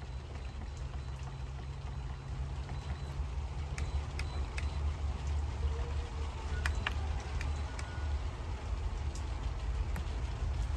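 A few light clicks of a finger pressing the plus/minus timer buttons on an electronic rice cooker's control panel, bunched between about four and seven seconds in, over a steady low rumble.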